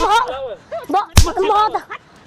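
Two sharp slaps, a little over a second apart, hitting during a scuffle. Between them a high, wavering voice is shouting or wailing.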